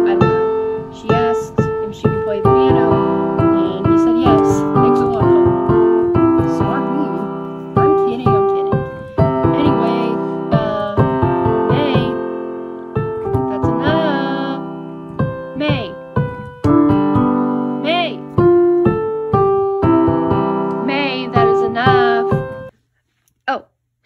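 Piano music: a melody over chords with distinct struck notes, which stops suddenly near the end.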